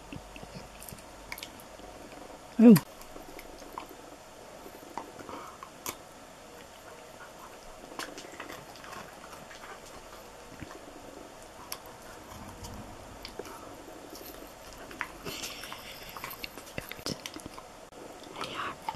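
A husky nibbling and chewing a piece of cake held in a person's fingers: faint, scattered small clicks and smacks, busier for a couple of seconds near the end.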